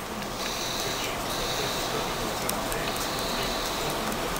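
A person taking a long drag on an e-cigarette: a steady, airy hiss of air drawn through the device.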